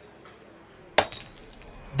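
Glass bottle landing on the ground as a cartoon sound effect: one sharp clink about a second in, then a few smaller clinks and rattles as it settles.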